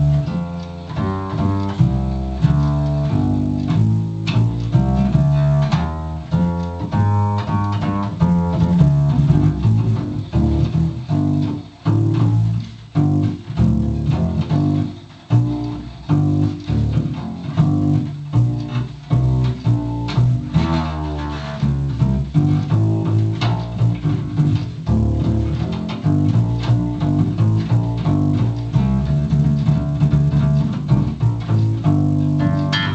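Upright bass (double bass) played by a first-time player: a continuous run of low notes changing a few times a second, with a couple of brief breaks about twelve and fifteen seconds in.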